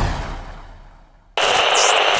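Channel logo sting sound effect: a deep hit fades away, then just over halfway through a sudden loud noisy burst sets in and holds at full strength.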